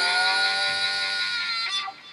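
Closing guitar chord ringing out after the strumming stops, held and slowly fading away, with the last of it dying out near the end.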